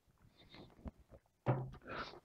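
Faint mouth sounds of sipping and swallowing water, then a single light knock as a drinking glass is set down on a wooden table, followed by a short hum from the taster about one and a half seconds in.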